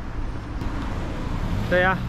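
Steady low hum of a motor vehicle engine running close by, over general street noise, with a brief spoken phrase near the end.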